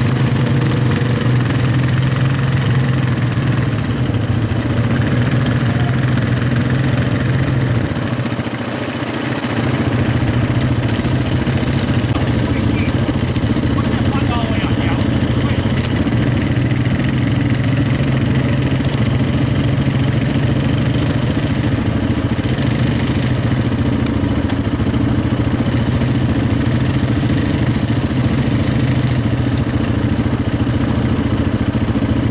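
Off-road vehicle engines (a quad ATV and a side-by-side UTV) running steadily at low trail speed, with a deep, even hum. The engine sound eases briefly about eight seconds in, then picks up again.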